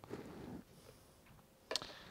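Water poured from a plastic measuring cup into a glass bowl of casein curds and cornstarch, a soft splashing pour that stops about half a second in. Near the end comes a single sharp tap as the plastic cup is moved and set down.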